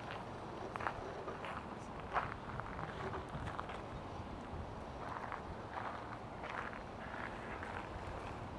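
Irregular soft knocks or steps, roughly one every second or so, over a steady outdoor background hiss.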